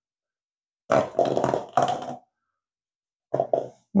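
A man's short grunting, laugh-like vocal sounds without words: one rough burst lasting just over a second, about a second in, and a shorter one near the end.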